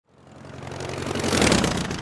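An engine sound swelling up from silence, peaking about one and a half seconds in and then fading, the rise and fall of something passing by.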